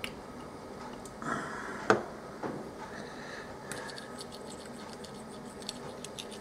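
Quiet tabletop handling of small items around a ceramic dish: a brief rubbing scrape, then a sharp knock just before two seconds in, followed by a smaller knock and light scattered ticks over a low steady hiss.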